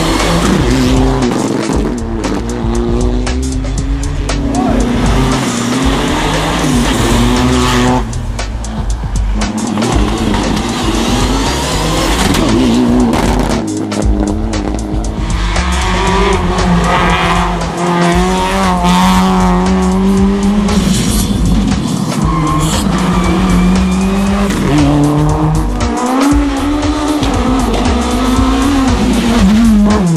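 Rally cars driving hard on a wet tarmac stage, engines revving and tyres squealing, mixed with background music.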